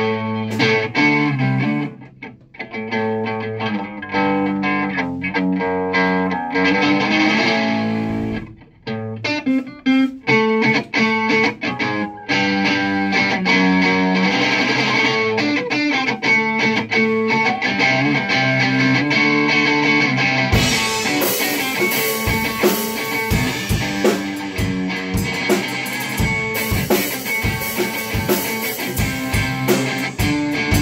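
Electric guitar through an amplifier playing a riff alone, with a couple of brief breaks. About twenty seconds in, a Yamaha drum kit joins with a beat.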